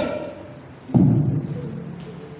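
A single deep, booming thud about halfway through, ringing on and fading over about a second.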